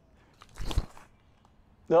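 A forehand disc golf throw from a concrete tee pad: one brief burst of noise, with a low thud under it, about half a second in.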